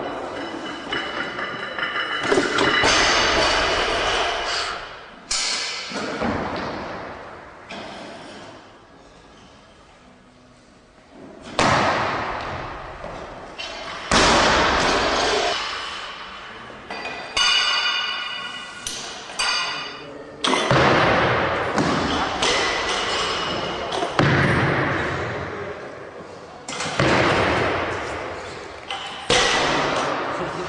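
A loaded barbell dropped and clanging again and again: about a dozen heavy thuds spread out through the span, each with metallic ringing that echoes and dies away over a second or two.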